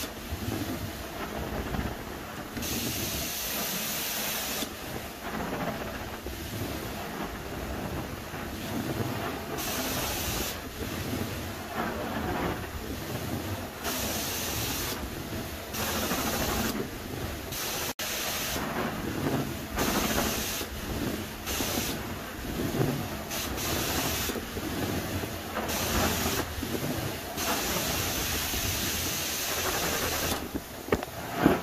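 Carpet extraction wand working across carpet: a steady rush of vacuum suction, with the hiss of its water spray switching on and off every second or two as the trigger is worked on each stroke.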